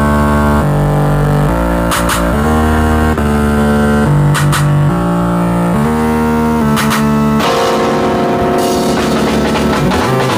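Amplified live band playing an instrumental passage: sustained chords change every second or so, with a short sharp hit about every two and a half seconds. About seven and a half seconds in, the music grows fuller as drums and guitar come in.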